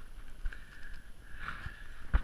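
Footsteps on a snow-covered path, a few soft, uneven steps.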